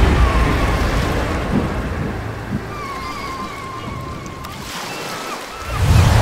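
Surf washing onto a sandy beach in a steady rush that slowly fades, with a string of short high chirps from about two and a half seconds in. Near the end a deep boom swells up.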